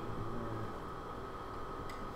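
Steady room noise: a low, even hiss with a faint constant high-pitched hum, with no distinct events.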